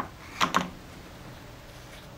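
Light handling noises: a sharp click, then two quick knocks about half a second later, as the plastic takeout-tub controller and its parts are handled on a wooden table, followed by faint room tone.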